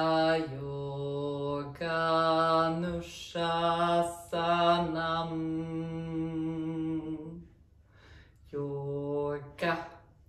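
A woman chanting a Sanskrit mantra solo and unaccompanied, in long phrases held on a few steady notes. There is a short pause for breath near the end before the next phrase begins.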